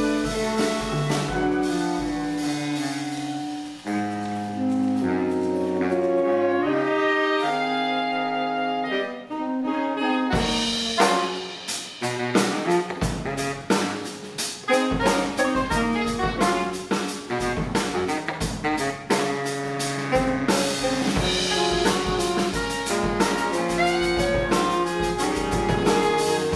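Saxophone quartet playing sustained chords over a drum kit. The drums thin out for a few seconds, then come back strongly about ten seconds in and keep a busy beat under the saxophones.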